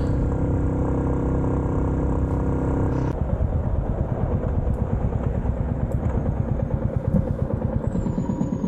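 Motorcycle engine running steadily at cruising speed, heard from on board the bike. About three seconds in the sound changes abruptly to a lower, choppier engine note with a quickly fluttering loudness as the bike goes more slowly.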